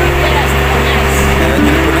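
A fishing boat's engine running with a steady low drone.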